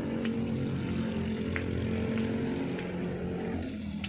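A steady engine drone with an even, unchanging pitch that fades out shortly before the end.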